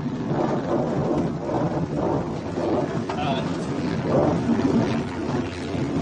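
Steady rumble and rush of air in the cockpit of a two-seat glider during its towed takeoff run behind a tug plane.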